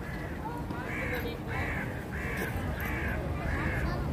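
A gull calling: a series of five harsh notes about two-thirds of a second apart, starting about a second in.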